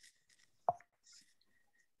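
A single short, sharp click about two-thirds of a second in; otherwise near silence.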